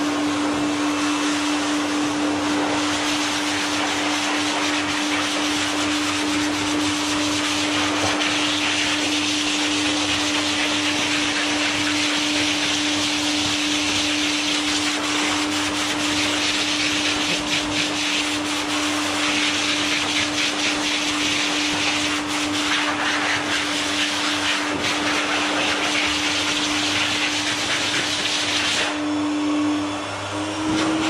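High-velocity pet dryer running at its minimum setting: a steady motor hum with rushing air as the nozzle blows through a dog's wet coat.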